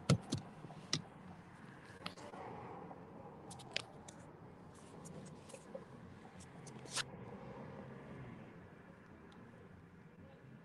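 Handling noise from a phone being put down and covered: a few sharp clicks and knocks, the loudest right at the start and about seven seconds in, with faint rubbing in between.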